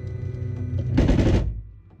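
Flashforge Dreamer NX 3D printer humming steadily. About a second in, a short, loud, rattly burst of noise cuts across it.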